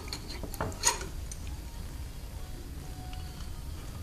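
Light handling of an adjustable wrench at a metal workbench: a few faint metal clicks, with one short, slightly louder sound about a second in.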